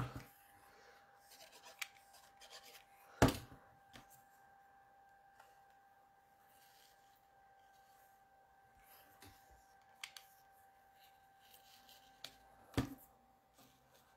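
Paper cut-outs being handled and pressed down on a card on a wooden table: mostly quiet, with a sharp tap about three seconds in, a few fainter ones, and another tap near the end, over a faint steady tone.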